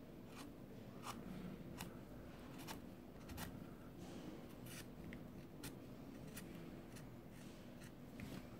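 Faint, brief scraping strokes of a peeler blade set in a plastic grater, shaving thin strips of skin off an avocado, about ten strokes in a steady rhythm of a little more than one a second.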